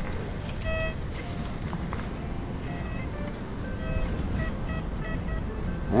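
XP Deus 2 metal detector sounding a series of short, irregularly spaced beeps as its coil passes over a target still in the hole, over a steady low rumble.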